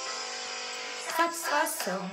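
Opening of a children's worship song: a held instrumental chord, then a woman's voice starting to sing over the accompaniment about a second in.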